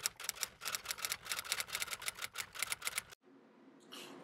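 Typewriter sound effect: a rapid run of key clicks, about eight or nine a second, accompanying on-screen text being typed out. It lasts about three seconds and then cuts off suddenly.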